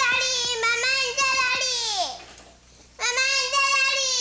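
A young child calling out for his mother in long, drawn-out cries. One call falls in pitch as it trails off about two seconds in, and a second call starts about a second later.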